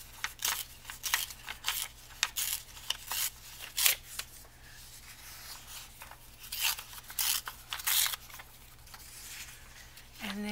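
Sheet-music paper being torn by hand in a series of short, crisp rips as the margin is torn off the page, with a few more rips about six to eight seconds in.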